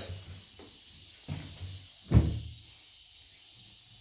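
Two dull knocks of kitchen handling, a soft one just over a second in and a louder, sharper one about two seconds in, with quiet between them.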